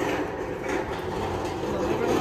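Steady outdoor background noise with a faint low hum.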